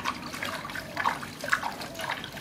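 Water splashing and sloshing in a large aluminium basin as hands scoop and pour water over a bathing baby macaque, in several short irregular splashes.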